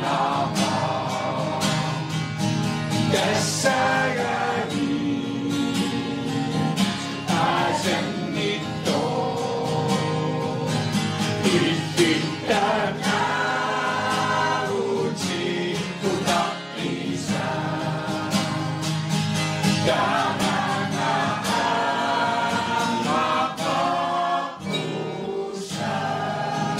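A mixed choir of men and women singing together, accompanied by a strummed acoustic guitar.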